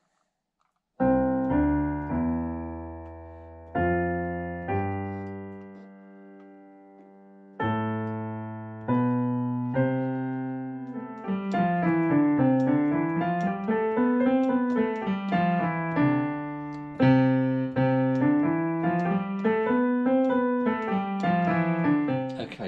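Roland FP30 digital piano played slowly with both hands by a beginner practising hands together: first a few held chords with deep bass notes, then from about eleven seconds in a run of single notes climbing and falling over the chords.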